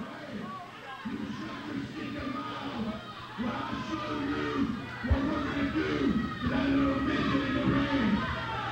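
A man talking into the ring announcer's microphone through the hall's PA system, distant and echoing, over a steady electrical hum. A single knock comes about five seconds in.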